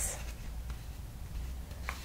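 Faint rustle of a paperback picture book held open in the hands, over a low steady room hum, with a small click near the end.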